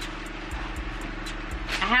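Electric fan running on high: a steady hum and whoosh of moving air.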